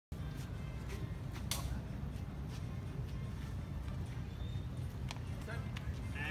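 Outdoor street ambience with a steady low rumble, faint distant voices and a few light clicks.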